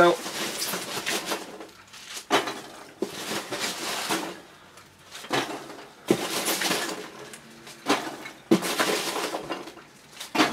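Handfuls of packing peanuts rustling and crackling as they are scooped out of a cardboard box, in several separate bursts.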